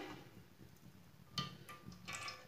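Very faint sound of cooking oil being poured into an empty aluminium karahi, with a brief faint clink about one and a half seconds in.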